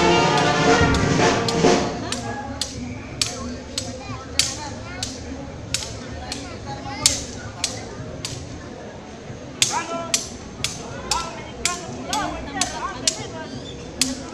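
Brass band music breaks off about two seconds in. A string of sharp clacks follows, sparse at first and coming faster from about ten seconds in, over low crowd voices.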